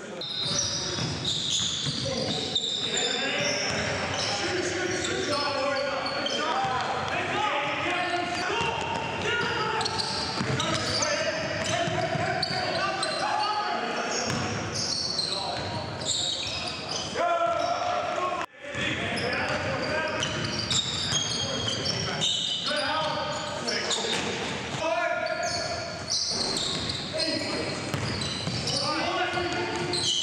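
A basketball bouncing on a gym floor amid players' shouts and calls, echoing in a large hall. The sound cuts out briefly a little past halfway.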